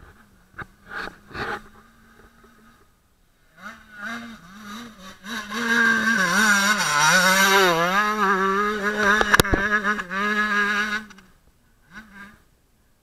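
Husqvarna motocross bike engine passing close through a corner, faint at first, then building and loudest in the second half, its pitch rising and falling with the throttle. A single sharp crack comes near the end, and the engine sound drops away just before the close.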